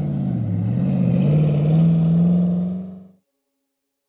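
Engine of a 3D-printed Lamborghini Aventador SVJ replica running as the car drives off, its pitch dipping briefly and then rising again and holding. The sound fades out about three seconds in.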